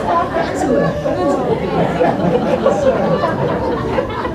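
Several people talking at once, overlapping voices with no single speaker clear: audience chatter.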